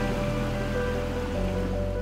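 Background music of slow, held notes, mixed with a steady rushing noise like flowing water.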